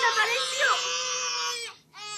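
Baby crying: one long wail held at a steady pitch that breaks off briefly near the end, then starts again.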